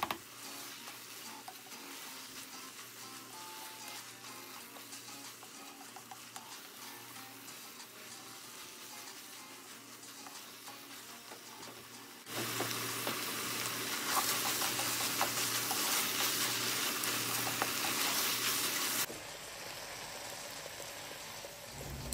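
Minced dullet with green chillies frying in a stone-coated nonstick saucepan, sizzling while a wooden spoon stirs and scrapes through it. The sizzle is faint at first and gets suddenly louder about twelve seconds in, with spoon scrapes on top, then drops back about three seconds before the end.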